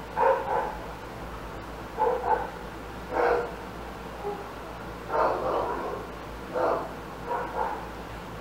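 Barking, like a dog's, in about six short, irregularly spaced barks.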